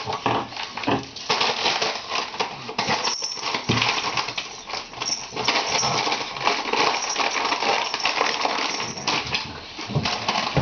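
Pug puppies and an older pug scuffling over a crisp packet used as a toy: dense crinkling and scrabbling noise that runs on almost without break, with some small dog sounds.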